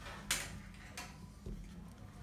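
Hands rolling a lump of Play-Doh back and forth on a tabletop: faint rubbing with a couple of short soft strokes, over a low steady hum.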